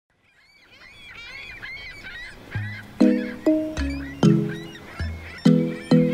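Birds calling as the sound fades in from silence. About two and a half seconds in, the song's instrumental intro starts: deep bass notes and short, sharp chord hits in a steady rhythm, louder than the calls.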